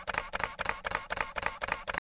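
Camera shutter clicking in a rapid burst, a long run of quick, evenly spaced clicks.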